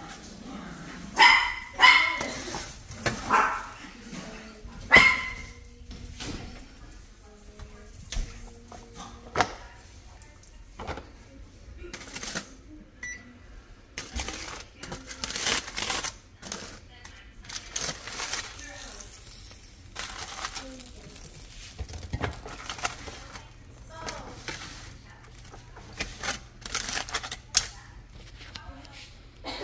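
Aluminium foil and parchment paper crinkling as they are pulled open on a baking pan, in many short crackles from about twelve seconds on. Near the start there are a few loud, short pitched cries.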